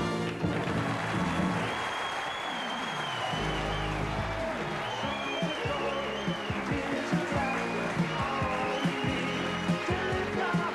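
Studio audience applauding over the show's closing theme music, which carries on with a steady beat.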